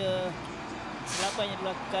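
Quiet speech, lower than the talk around it, with a short hiss about a second in.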